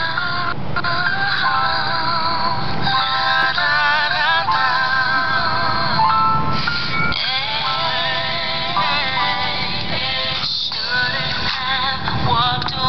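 Music: a song with a sung melody that wavers and slides in pitch, over a steady backing, playing throughout.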